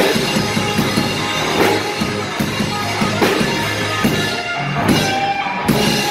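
Live rock band playing an instrumental passage: electric guitars and bass over a drum kit, with a strong drum hit about every 0.8 s. The texture thins briefly near the end, then a loud crash hits just before the close.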